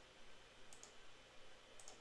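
Near silence with two faint mouse-button clicks about a second apart, as dialog buttons are clicked.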